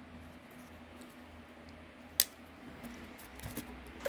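Quiet handling of a folding knife: one sharp click about two seconds in, then a few faint taps.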